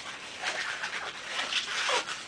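Inflated latex modelling balloon (Qualatex 260Q) squeaking and rubbing as it is twisted by hand, with a short rising squeak near the end.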